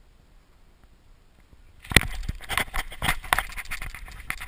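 Faint quiet for about two seconds, then a sudden knock and a run of clattering, scraping handling noise as the GoPro is picked up and moved over the snow.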